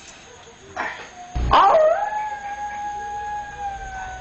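A sudden loud noise about a second and a half in, then one long howl that holds its pitch and then slowly sinks.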